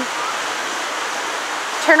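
Steady rush of a waterfall and its rocky stream, an even wash of water noise.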